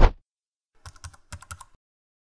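Computer keyboard typing sound effect: a short whoosh at the start, then a quick run of key clicks from about a second in, lasting under a second.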